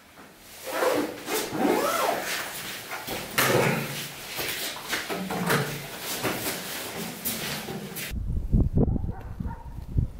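Large plastic water bottles being picked up and handled, crackling and knocking, with a few squeaks. About eight seconds in it changes to footsteps crunching on snow, with wind rumbling on the microphone.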